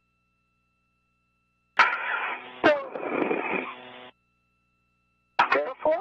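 Brief radio transmission of a voice over the spacewalk communication loop: about two seconds of muffled, narrow-band speech too unclear to make out, keyed on and cut off abruptly, with dead air before and after. Another voice begins on the radio near the end.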